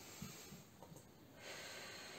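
Faint breathing during a deep-breathing exercise: a soft hiss of breath drawn in through the nose about one and a half seconds in.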